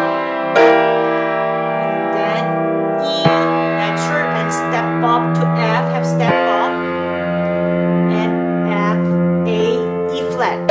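Piano playing slow sustained chords in G minor, a new chord struck roughly every three seconds, with lighter notes in between and the chords ringing on between strikes.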